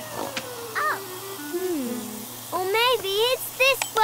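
A cartoon child's voice giggling in a run of short bursts near the end, with a few sliding vocal squeaks earlier, over light background music.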